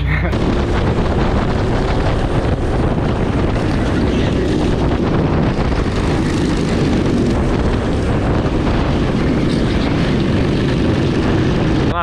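Go-karts racing in a close pack, heard from an onboard action camera: engines running under a loud, constant rush of wind noise on the microphone.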